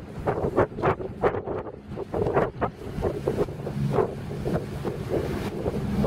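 Twin Detroit Diesel two-stroke marine engines of a passing Grand Banks trawler, a steady drone that grows louder through the second half as the boat comes close. Wind gusts on the microphone and the rush of the bow wake are heard, loudest in the first half.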